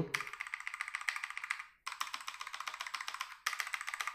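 Rexus Legionare MX3.2 mechanical keyboard keys pressed in rapid succession, a fast clatter of clicks in three runs with brief breaks a little before halfway and at about three and a half seconds.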